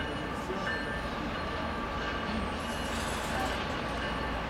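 Approaching CSX freight train led by a GE ES44AH diesel locomotive, its engine giving a steady low rumble.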